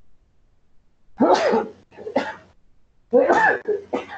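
A man coughing in three bouts about a second apart, starting about a second in.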